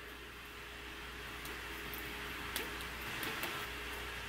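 Sewing thread stretched taut from a hand-held spool to a sewing machine being plucked and twanged: faint, with a few scattered light ticks over a low steady hum.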